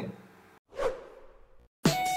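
A short whoosh transition sound effect, falling in pitch, about a second in, followed by an intro music jingle that starts just before the end.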